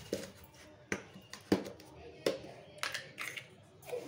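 About half a dozen sharp clicks and taps of kitchen utensils and plastic containers being handled on a table, the loudest about a second and a half in.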